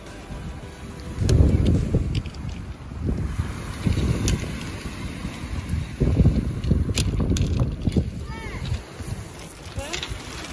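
Wind buffeting the microphone in gusts, strongest about a second in and again around six seconds, over small waves breaking and washing on a shingle beach.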